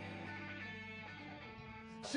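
Electric guitar chord held and ringing out quietly in a break in a live punk rock song, fading as it sustains; the low notes die away about one and a half seconds in.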